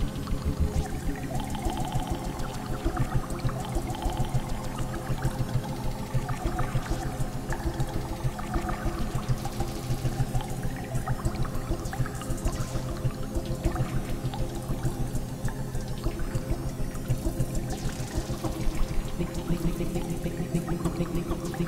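Berlin School-style electronic music played live on synthesizers: a fast, evenly pulsing bass sequence under sustained chords.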